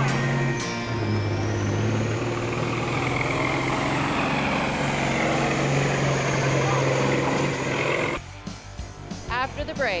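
Big-rig diesel engine working hard while it drags a weighted pulling sled, with a high whine that rises over the first few seconds and then holds. It cuts off suddenly about eight seconds in.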